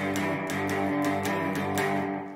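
Gretsch hollow-body electric guitar playing a shuffle riff on the lower strings in G, about three to four picked strokes a second, steady throughout.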